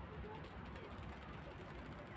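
Faint, steady background noise with a low rumble and no distinct sound events.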